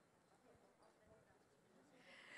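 Near silence: only faint background hiss.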